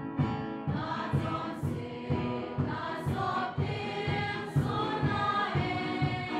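Choir singing a hymn to a steady drum beat.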